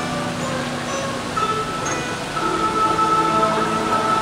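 Guzheng (Chinese zither) played solo, plucked notes ringing on and overlapping, with a long high note held from about a second and a half in.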